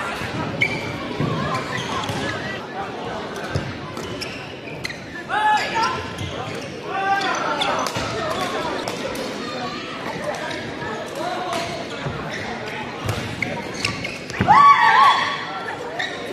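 Badminton rally in an echoing indoor hall: short sharp racket strikes on the shuttlecock and shoe sounds on the court. Players' voices call out several times, loudest in a shout about a second before the end.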